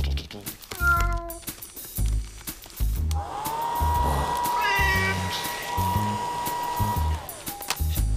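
Cartoon sound effects: a cat meows about a second in. Then a hair dryer switches on with a rising whine, runs steadily with a second meow over it, and winds down shortly before the end.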